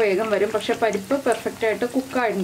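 Parippu vada (lentil fritters) sizzling as they deep-fry in hot oil in a cast-iron kadai, turned with a wire spider skimmer, with talking over it throughout.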